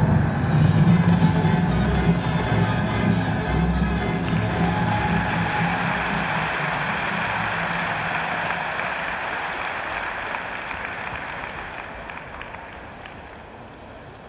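Music plays through the first few seconds and ends, giving way to an arena crowd applauding; the applause fades away toward the end.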